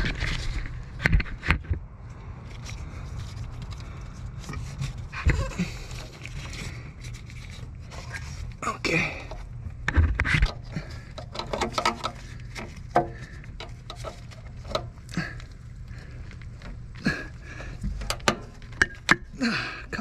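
Scraping, clicks and knocks from the stock rubber intake tube being twisted and tugged loose by hand in a cramped engine bay, with a person's panting breath from the effort and a steady low rumble underneath.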